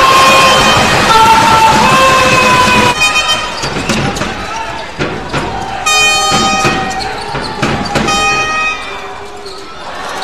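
Live basketball court sound: a ball bouncing on the hardwood floor and sneakers squeaking, over arena crowd noise. A long held tone fills the first three seconds, and sharp squeaks stand out about six and eight seconds in.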